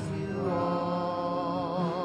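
A worship song: a voice holding long notes with a wavering vibrato over a steady instrumental accompaniment.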